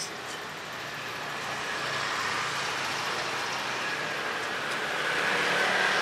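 Road traffic passing on a city street: steady vehicle noise that grows slowly louder, swelling further near the end as a vehicle comes close.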